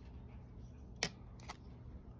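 Two light handling clicks: a sharp one about a second in and a weaker one half a second later, over a faint low hum.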